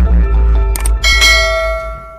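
Subscribe-animation sound effects over a low electronic drone: two quick clicks, then a bell rings about a second in and fades away.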